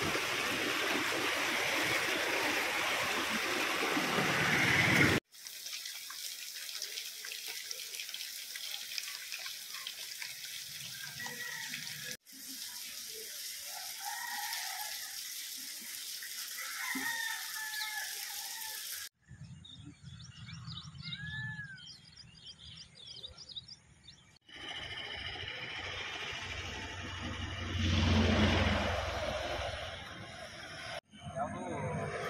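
Muddy floodwater rushing over rocks in a stream, a loud steady rush that cuts off abruptly about five seconds in. After that come several quieter outdoor clips joined by sudden cuts, with water running and birds chirping.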